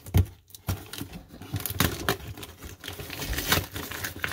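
A small knife slitting the packing tape on a cardboard shipping box, with irregular scrapes, taps and rustles of the cardboard as the box is handled.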